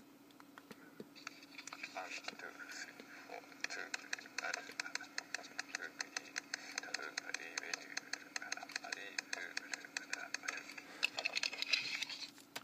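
Rapid, evenly spaced tapping, about seven taps a second, starting about a second in and stopping near the end, over a steady low hum.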